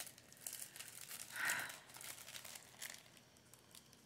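Faint crinkling of a clear plastic bag as fingers work at its seal to open it, dying away about three seconds in.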